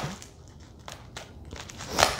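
Faint crinkling and crackling of plastic bubble-wrap packaging being handled and opened, with a few small clicks.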